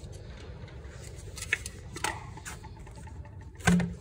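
Air filter housing's black end cap being handled and shaken out: a few light clicks and taps, then one louder knock near the end, over a steady low hum.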